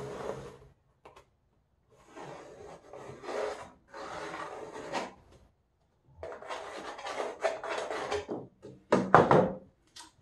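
Pencil scratching on a pine plank as it is drawn around the inside of a bentwood box ring, in several strokes of a second or two with short pauses between them. A shorter, louder scrape comes near the end.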